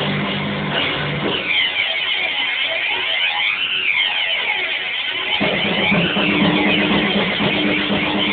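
Rock band playing live without vocals, electric guitars to the fore. The low notes drop out about a second in, leaving a thinner guitar passage, and the full band comes back in about five and a half seconds in.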